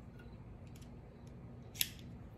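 Faint clicks as a Colibri V-cut cigar cutter is handled, then one sharp snap near the end as its blade cuts into the cigar's cap.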